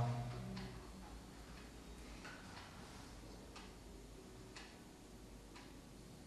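Clock ticking faintly and evenly, once a second.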